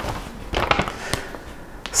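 Sheets of paper being picked up and handled: a crackling rustle with several sharp clicks.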